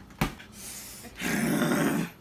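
A sharp knock a quarter second in, then in the second half a person's loud, rough, growling vocal noise lasting under a second.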